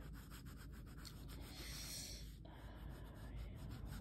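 An eraser and fingers rubbing on drawing paper at the edge of a charcoal lip sketch, in quick back-and-forth strokes. About halfway there is a louder, hissier stretch of rubbing that stops abruptly.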